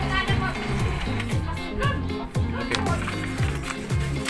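Background music with a steady beat, a low drum about twice a second over a bass line, with a singing voice.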